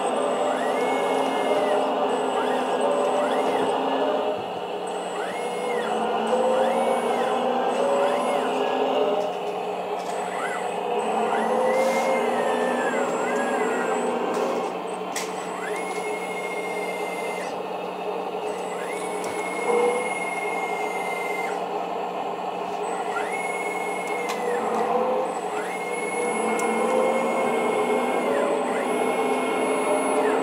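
Electric hydraulic pumps and drive motors of a 1/10-scale hydraulic RC Caterpillar D11 bulldozer running. Their whine rises in pitch, holds for a second or more and drops back again and again as the machine is driven and the blade is worked, over a steady hum.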